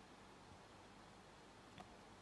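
Near silence: faint steady room tone with a single faint click near the end.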